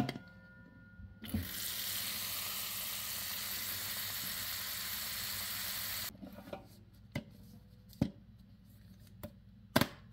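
Kitchen faucet running water into a metal bowl fitted with a plastic drain, filling it to test the drain for leaks; the water starts about a second in and shuts off suddenly about six seconds in. A few light knocks follow.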